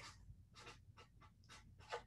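Faint scratching of a pen writing on paper, a quick run of short strokes.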